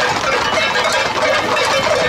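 Dense clatter of many horses' hooves on a paved road, mixed with shouting from people running alongside.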